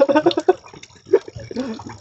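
A man laughing in short, choppy bursts, loudest at the start and trailing off with a few fainter bursts.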